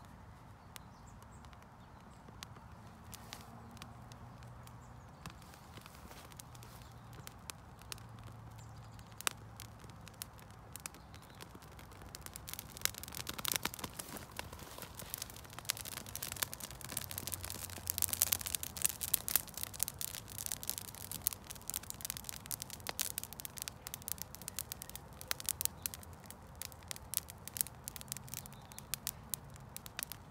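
Dry rat-tail fescue straw burning, crackling and popping: scattered pops at first, then dense crackling from a little before halfway as the flames take hold, busiest a few seconds later and going on to the end.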